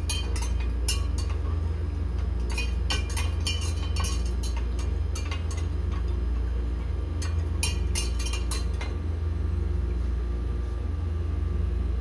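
Stirring rods clinking against two glass beakers of diesel fuel as they are stirred, in three spells of quick light clinks. A steady low hum runs underneath.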